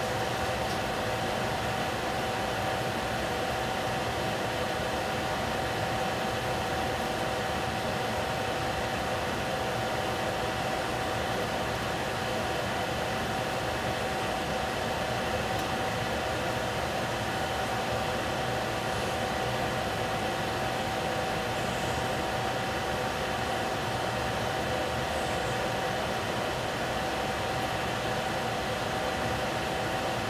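Covered stainless steel pot of baby squash steaming on a stove: a steady, unchanging hiss with one constant hum-like tone running through it.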